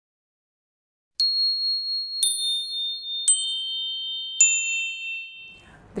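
Four high, bell-like chime notes struck about a second apart, each lower in pitch than the last and each ringing on, the first coming after about a second of silence.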